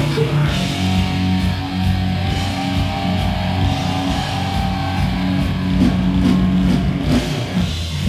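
A live rock band playing an instrumental passage with no vocals: electric guitars, bass guitar and drum kit, with long held bass notes.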